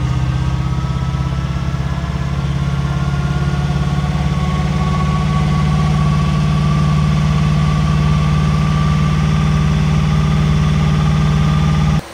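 Batman Tumbler replica's engine running steadily, heard from inside the cockpit; its pitch rises slightly a few seconds in and then holds.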